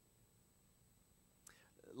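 Near silence: faint room tone, with a small click and a man's voice beginning just before the end.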